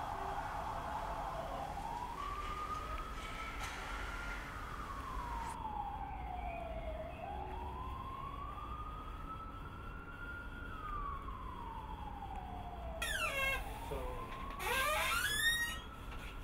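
A siren wailing, its pitch rising and falling slowly, about one full cycle every seven seconds. Near the end, a flurry of quick high squeaks.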